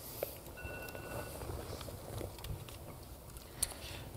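A quiet pause in a large hall with a steady low room hum and faint rustles and soft clicks from a picture book being held up and lowered. A brief, faint, steady high tone sounds for under a second early on, and a sharper click comes near the end.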